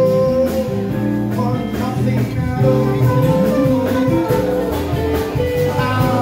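Live jazz band playing: trombone and saxophone hold long notes over electric guitar, with a steady beat.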